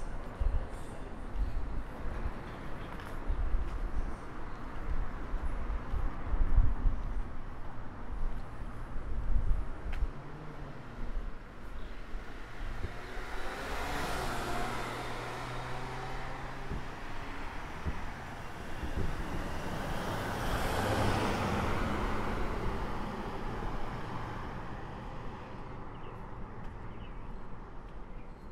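Two motor vehicles passing by one after the other, each swelling up and fading away: the first with a steady engine tone near the middle, the second a few seconds later. Low rumbling from wind or handling on the microphone over the first third.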